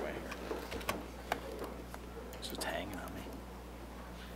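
Low, murmured speech close to a podium microphone, with a few sharp clicks about a second in and a steady low hum underneath.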